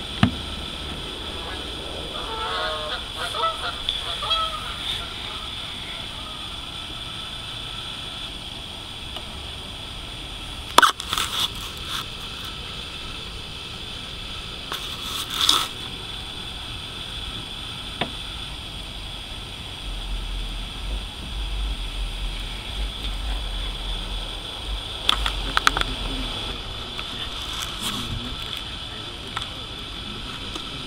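Outdoor background with a steady high-pitched hiss, a few sharp knocks and clicks from handling, and a brief series of pitched calls a few seconds in.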